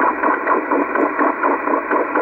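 Slow-scan television signal received on a Yaesu FT-301 transceiver and played through its speaker: a thin, warbling tone pattern that repeats about four times a second, each repeat one scan line of the picture being sent.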